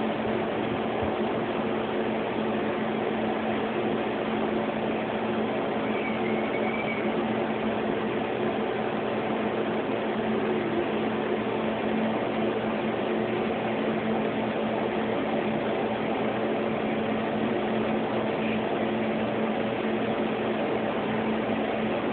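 A steady machine-like hum with an even hiss, unchanging in level.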